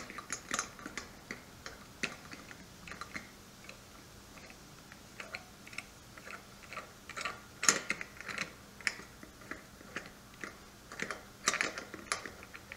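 Sanke keg spear-removal tool being unscrewed and backed off the keg neck by hand: irregular light metal clicks and ticks, with a louder clack about eight seconds in and a cluster of clicks near the end.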